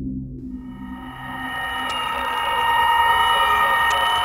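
Background music: a chord of held, steady tones fades in and swells louder over the first couple of seconds, above a low hum.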